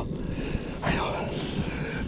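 Wind buffeting the microphone, heard as a low rumble that never lets up.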